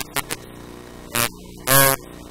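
Heavily distorted, buzzy voice in short syllable-like bursts over a steady electrical hum.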